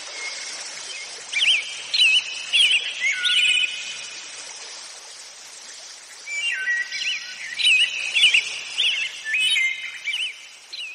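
Birds chirping and whistling in quick rising and falling calls, in two bouts with a lull in the middle, over a steady outdoor hiss.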